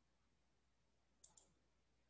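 Near silence, broken a little past halfway by a faint computer mouse double-click.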